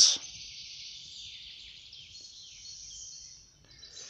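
Faint woodland background: a soft high-pitched hiss with a few faint, distant chirps.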